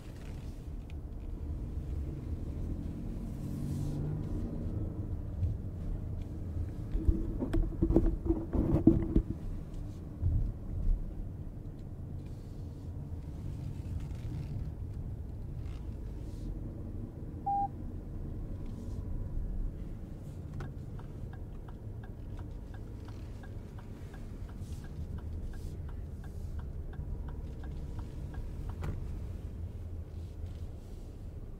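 Low, steady cabin rumble of road and tyre noise in a 2023 Lexus RX 500h hybrid SUV driven slowly, with a cluster of loud thumps about seven to nine seconds in and another a little later. A short beep comes near the middle, and in the last third the turn-signal indicator ticks evenly, about two ticks a second.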